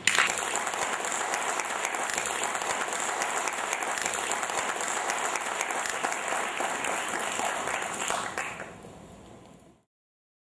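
Audience applauding, a dense steady clapping that fades out near the end.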